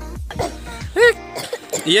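Voices over background music, with a short high-pitched vocal call about a second in.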